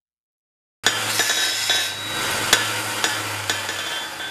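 A steady hiss with a low hum underneath and a few sharp clicks scattered through it, starting suddenly about a second in and fading near the end.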